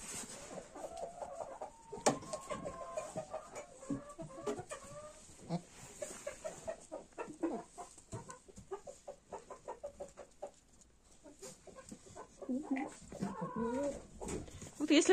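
Domestic hens clucking faintly, a scatter of short calls with a few longer held notes.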